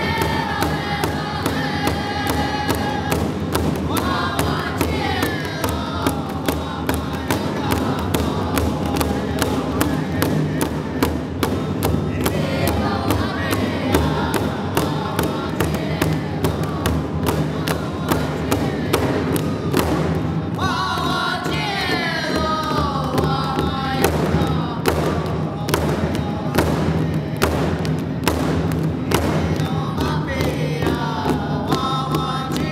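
Powwow song: a big drum struck in a steady, even beat while a group of singers chants in high phrases that fall in pitch.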